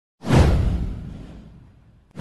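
An intro whoosh sound effect with a deep boom underneath. It starts suddenly about a quarter second in and fades away over about a second and a half.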